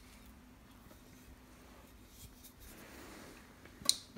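A kitchen knife slicing through a soft fig on a ceramic plate, barely audible over faint room tone, then one sharp click of the blade against the plate near the end.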